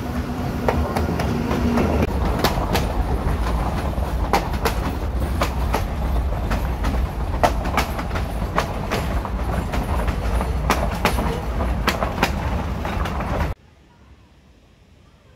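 PeruRail diesel passenger train passing close by: a heavy low rumble, with a steady engine tone for the first two seconds. Then many sharp clicks of the coaches' wheels over the rail joints. The sound cuts off suddenly near the end.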